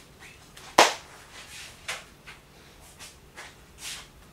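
Elastic bands snapping against a glass clip frame as it is clamped together: one sharp, loud snap just under a second in, then several fainter snaps and clicks.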